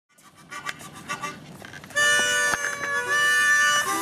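Harmonica playing: soft, short notes for the first two seconds, then a loud chord of several notes held steadily from about two seconds in.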